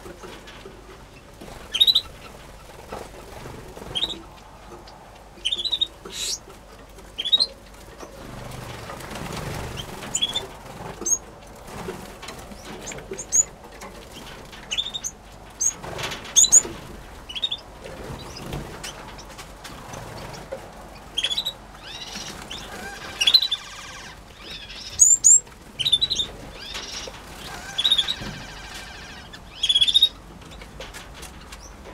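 Small aviary finches, Gouldians among them, giving short, high, rising chirps every second or two, more often in the second half, with occasional soft wing flutters.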